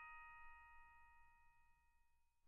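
The fading tail of a ringing bell-like note in background music, several steady tones dying away into near silence.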